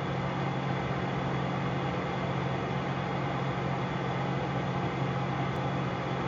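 Steady low electrical hum with an even hiss over it: the recording's background noise, with no other sound.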